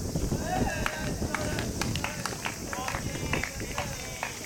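Outdoor tennis court sounds: a scatter of short sharp clicks of ball strikes and footsteps on the court, distant voices calling from around the courts, and wind rumbling on the microphone.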